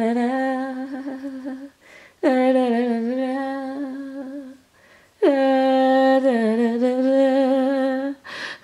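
A woman humming a slow tune in three long, held notes, each lasting two to three seconds, with short breaks between them.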